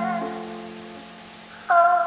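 Lo-fi music intro: a soft keyboard chord over a held low note fades away, and a new chord comes in near the end. A steady rain sound plays underneath.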